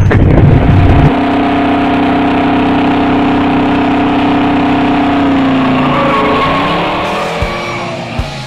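Car doing a burnout: engine held at high revs with the rear tyres spinning, a steady sustained tone that drops in pitch and fades about six seconds in as the revs come down. A loud low boom from the intro fills the first second.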